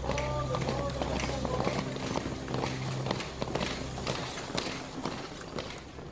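Many booted footsteps of a squad of soldiers moving quickly in file on a paved street, a rapid uneven tramping. A voice is heard briefly near the start, and low background music fades out about three seconds in.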